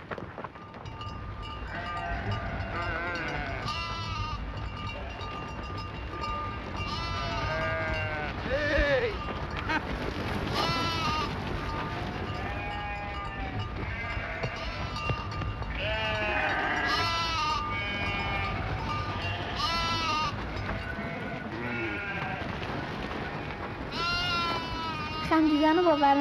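A flock of sheep and goats bleating, many overlapping calls throughout, over a steady low rumble.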